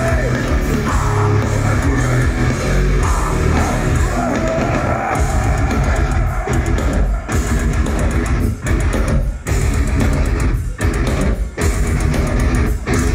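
Heavy metal band playing live, with distorted electric guitar, bass and drums. In the second half the riff turns stop-start, with several brief abrupt drops between hits.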